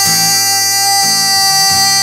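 A man singing one long, steady held note over a strummed acoustic guitar.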